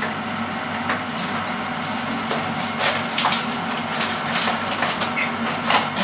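Steady background hum of a room appliance, with irregular crinkles and clicks from a cardboard cake box with a plastic window being handled.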